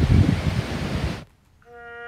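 Wind buffeting the microphone outdoors, cut off suddenly just over a second in. After a brief silence a bugle starts a long held note, the opening of a bugle call.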